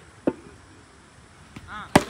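A cricket bat striking the ball with one sharp crack near the end, after a duller single knock about a quarter second in.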